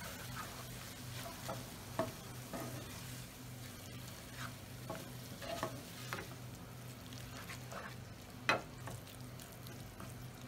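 Onions, garlic and tomato paste sizzling gently in a frying pan while a wooden spatula stirs and scrapes through them. Short scrapes and knocks of the spatula against the pan come now and then; the sharpest is about eight and a half seconds in. A steady low hum runs underneath.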